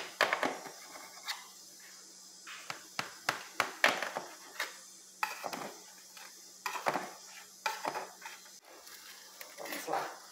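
Metal spatula scraping and knocking against an aluminium baking pan while cutting a piece of cake loose and sliding under it: a scattered series of sharp clicks and short scrapes.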